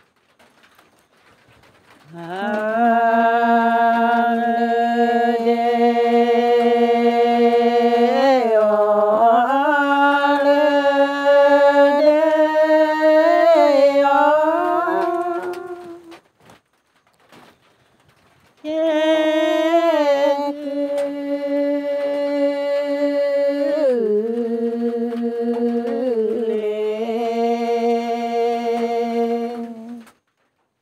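A single voice singing a Karen traditional 'saw' song in long, held melodic phrases with ornamental slides between notes. There are two phrases, with a short pause between them about halfway through.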